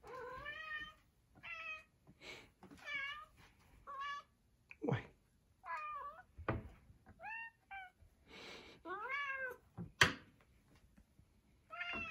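Tabby cat meowing over and over, about ten short calls that bend up and down in pitch: a cat begging for food when a can is opened. A few sharp clicks fall between the meows, the loudest about ten seconds in.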